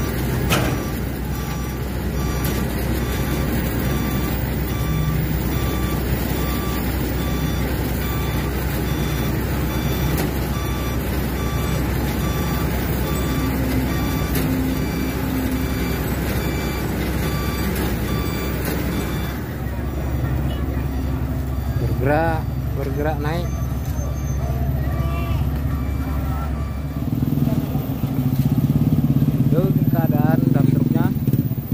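Heavy truck diesel engines running steadily, with a truck's reversing alarm beeping at an even rhythm for about the first twenty seconds. After an abrupt change, voices come in and an engine revs up louder near the end as the recovery pull goes on.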